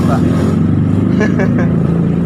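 Street traffic engines, motorcycles among them, running close by as a steady low drone.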